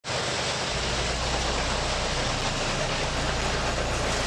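Freight train with diesel locomotives passing at speed: a steady rush of wheels on rail, with a low engine rumble coming in under a second in.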